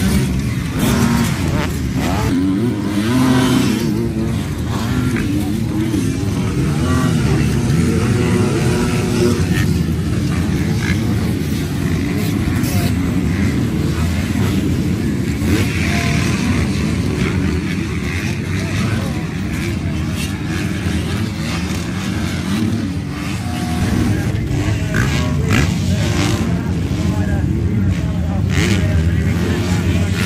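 Several motocross bikes racing past on a dirt track. The engines rise and fall in pitch as they accelerate and back off, with no break throughout.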